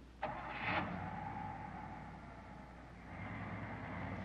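A car engine starts with a sudden catch and then runs steadily, easing off slightly midway and picking up again toward the end.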